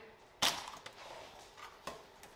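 A sharp click about half a second in, then a few faint taps and rustles of food and packets being handled on a kitchen counter, and another short click near the end.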